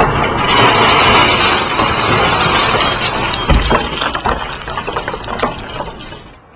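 A car windshield being smashed: a sudden loud crash, then a dense crackle of breaking glass full of sharp clicks, with a heavy thud about three and a half seconds in, dying away at the end.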